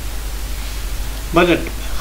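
Steady hiss over a low hum, the background noise of a voice recording, with one spoken word about a second and a half in.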